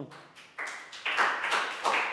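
A small group of children and their teacher clapping together, a dense patter of hand claps that starts about half a second in and grows louder.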